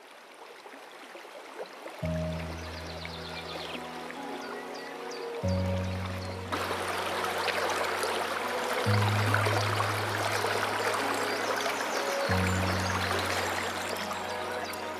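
Flowing river water fades in from silence. About two seconds in, a film score of low sustained chords joins it, changing every three to four seconds. The rush of the water grows louder about halfway through.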